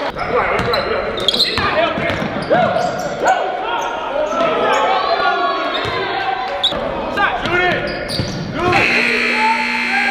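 Live basketball game sound on a hardwood gym court: the ball bouncing, sneakers squeaking in short sharp chirps, and players' voices echoing in the hall.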